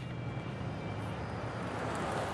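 A car driving toward the listener on a paved road. Its tyre and engine noise grows louder toward the end.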